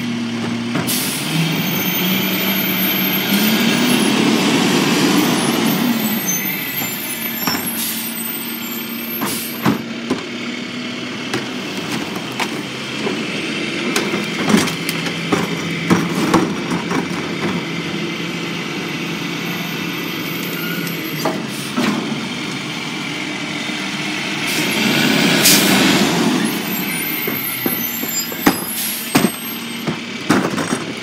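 Rear-loader garbage truck working its packer: the engine runs and revs up twice to drive the hydraulics, with scattered knocks and clatter of trash and carts. A loud burst of air hiss comes about 25 seconds in.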